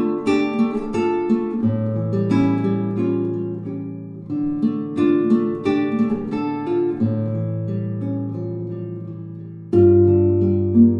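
Background music: an acoustic guitar picking single notes over held bass notes, the chord changing every two to three seconds.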